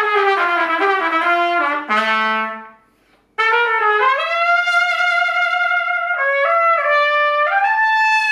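Solo trumpet playing two phrases. The first descends and ends on a low held note, then breaks off briefly about three seconds in; the second slides up to a long held note and then climbs stepwise to a sustained higher note.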